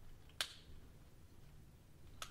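A single sharp click a little under half a second in, over quiet room tone.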